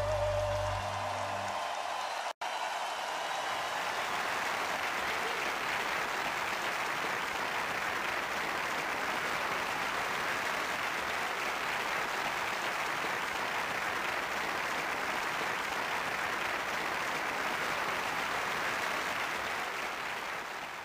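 Large arena audience applauding in a steady, even wash. The last held sung note and bass of the ballad die away in the first two seconds, and there is a brief dropout about two seconds in.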